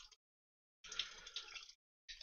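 Water pouring from a plastic tank into a funnel and bottle, splashing a little into a steel sink: a faint trickling splash for about a second in the middle, starting and stopping abruptly.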